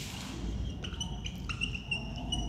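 Whiteboard marker squeaking on the board in a run of short strokes while writing, starting about a second in.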